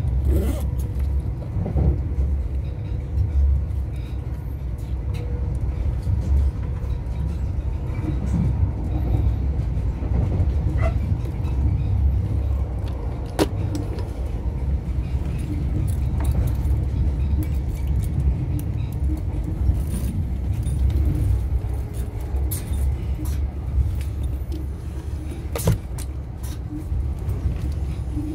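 Running noise inside a CrossCountry High Speed Train (InterCity 125) coach on the move: a steady low rumble of wheels on rail, with scattered clicks and rattles from the carriage, a sharper click about halfway through and another near the end.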